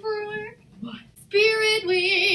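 A girl's voice in drawn-out, sing-song exclamations: one held note, a short pause, then a louder, higher held note.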